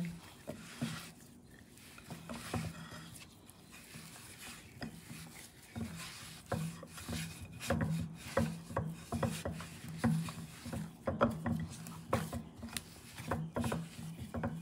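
Hand kneading dumpling dough with the fist in a glass bowl: irregular soft pressing, rubbing and knocks of dough against the glass, over a steady low hum.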